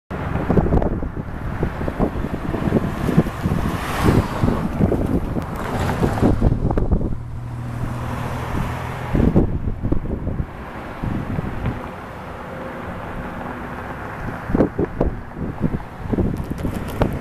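Wind buffeting the microphone in irregular gusts, with a low steady engine hum showing through in a calmer stretch about halfway in.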